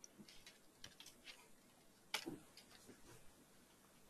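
Faint computer keyboard typing: a few soft key taps in the first second or so, then one sharper click about two seconds in.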